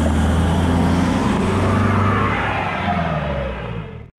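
Loud car engine revving, its pitch rising and then falling, easing off a little and cut off abruptly at the end.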